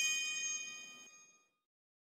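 A bell-like metallic ding, struck just before, ringing out with several clear high tones and fading away over about a second and a half.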